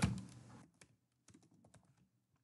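Computer keyboard being typed on: a quick run of faint key clicks that stops shortly before the end.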